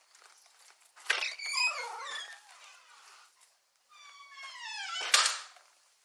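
A high squeal about a second in, then a longer squeal falling in pitch about four seconds in, cut off by a single sharp knock, all thin and with no bass, as picked up by a police body camera's microphone.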